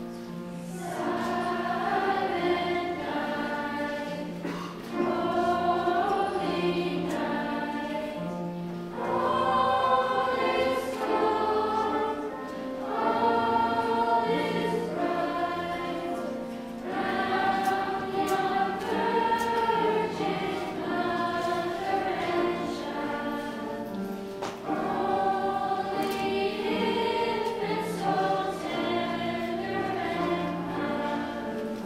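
A mixed school choir of boys' and girls' voices singing in parts, in phrases of a few seconds each with short breaths between.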